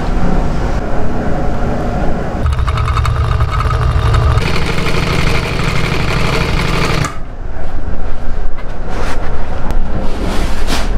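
Sewing machine running at speed, stitching a zigzag seam through maroon vinyl upholstery fabric, a fast even clatter of needle strokes. Near the end it gives way to louder rustling as the stiff vinyl cover is handled.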